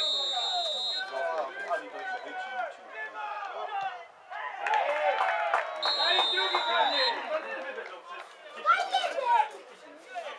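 Referee's whistle blown in a steady blast for about a second as the free kick is taken, and again about six seconds in as the goal is scored. Under it, players and spectators shout and call out, loudest around the goal.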